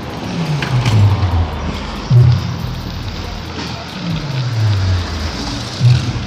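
Two cars driving past one after the other, each engine and tyre sound dropping in pitch as it goes by, about a second in and again past the four-second mark. Wind rushing over the handheld phone's microphone on a moving bicycle runs underneath, with a couple of brief loud buffets.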